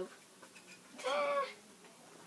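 A pet dog giving one short, high-pitched whine about a second in.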